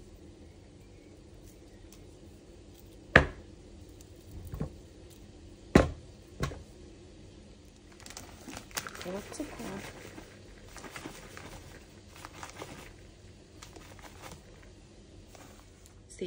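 A few sharp knocks as chunks of margarine are cut off with a serrated knife and dropped into a mixing bowl, followed near the middle by several seconds of plastic crinkling as powdered sugar is poured from its bag onto the margarine.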